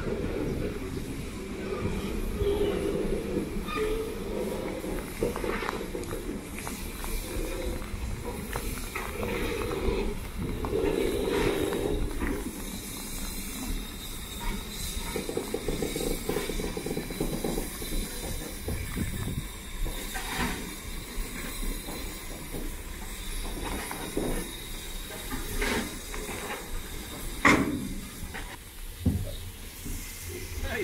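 BR Standard Class 4MT 2-6-0 steam locomotive No. 76017 running slowly into the platform and coming to a stand, with a steady rumble and steam hissing around it. A single sharp knock comes near the end.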